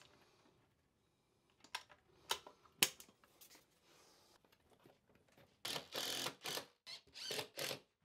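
Tools being handled: three sharp clicks and knocks in the second and third seconds, then about two seconds of broken rattling clatter near the end.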